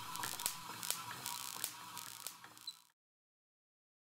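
Wimshurst machine running quietly: its counter-rotating plexiglass discs whir with irregular light clicking and a faint steady hum. The sound cuts off abruptly about three seconds in.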